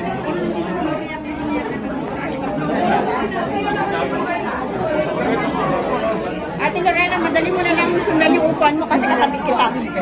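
Many people chatting at once in a large hall, a steady murmur of overlapping voices with no single speaker standing out.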